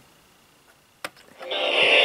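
A click from pressing the solar power bank's button, then, about half a second later, a loud burst of sound from the unit's built-in radio speaker as it comes on, lasting about a second.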